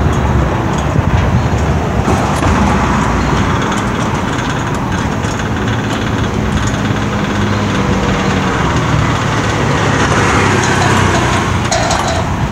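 Electric steel-bar gate in motion, its drive and running gear making a noisy, steady mechanical drone.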